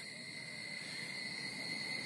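Cicadas singing: a steady, high-pitched drone held on one pitch without a break.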